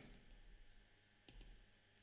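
Near silence, with a couple of faint clicks about a second and a half in, from a stylus tapping on a drawing tablet.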